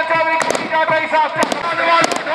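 Several sharp bangs, mostly in quick pairs about a second apart, over a steady droning bagpipe tune and a fast drumbeat.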